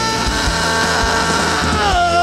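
Live rock band playing an instrumental passage: a long held note slides down in pitch near the end, over electric guitars, bass and drums.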